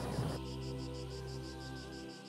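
Crickets chirping in a fast, even pulse, over soft background music of held low notes.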